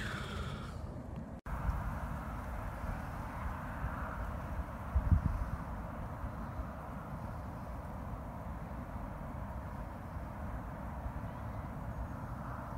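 Breeze buffeting the microphone by the lake as a steady low rumble, with one brief stronger gust about five seconds in.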